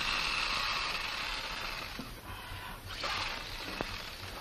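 Scratchy strokes of a drawing pencil shading on paper. One long stroke lasts about two seconds, then after a short break a second, shorter stroke follows and fades.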